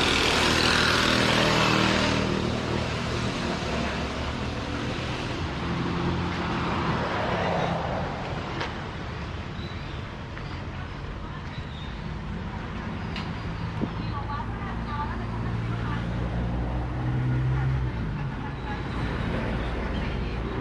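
Street traffic passing: a vehicle goes by close at the start, then engines and tyres of cars on the road run on, with a low engine hum swelling near the end.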